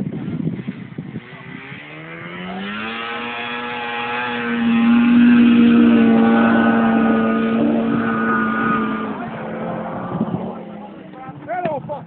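Polaris Indy 500 snowmobile's two-stroke engine revving up about a second and a half in, then holding a steady high-pitched run at full throttle as the sled skims across open water. It fades near the end as the sled draws away.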